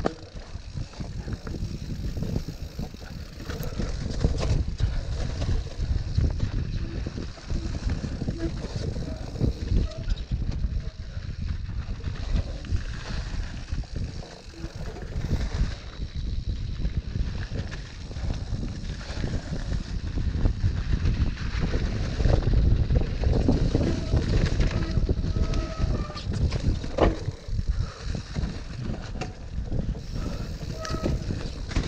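Mountain bike being ridden over rough trail: steady wind on the microphone, with constant rattling and knocks from the bike and tyres, louder in the last third.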